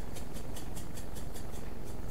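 A shaker jar of everything-bagel seasoning (sesame seeds, poppy seeds, dried onion) being shaken over a tray of buns: a fast, even rattle of seeds in the jar.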